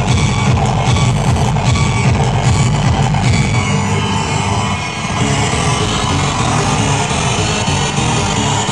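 Loud electronic dance music played over a club sound system, heavy in the bass; the low end drops away briefly about five seconds in and then returns.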